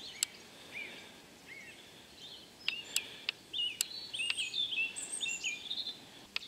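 Small birds chirping: many short rising and falling notes, busier in the second half. A few sharp clicks sound in among them.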